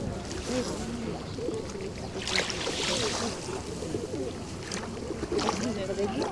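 Seaside ambience: wind on the microphone and small waves lapping the shingle shore, with indistinct voices of people in the background. A short louder rush of noise about two and a half seconds in.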